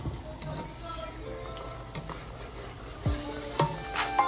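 Hot oil sizzling steadily as food deep-fries in a pan, with faint background music and a falling whoosh near the end.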